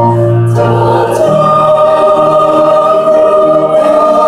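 Mixed church choir singing a Korean hymn in long held notes, with a new high sustained note coming in about a second in.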